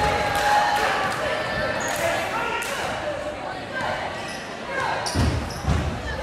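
Basketball dribbled on a hardwood gym floor, with two bounces near the end, over voices chattering in the gym and a few brief sneaker squeaks.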